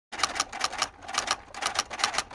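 Typewriter key-strike sound effect: sharp mechanical clicks in quick clusters of two or three, about every half second.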